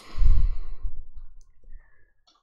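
A man's sigh: one breath out, loudest just after the start and fading away over about a second and a half.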